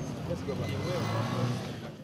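Street ambience: several people talking at once over the steady noise of road traffic.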